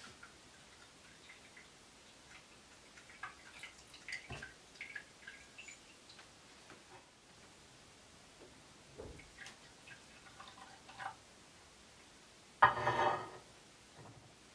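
Small clinks and taps of ceramic teaware on a wooden tea tray. Near the end comes about a second of tea being poured from a ceramic pitcher into a small cup, the loudest sound.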